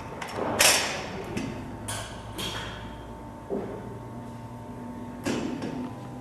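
Break-barrel air rifle being handled and readied to fire: a loud metallic clunk about half a second in, then a few lighter clicks and knocks, and another clunk near the end.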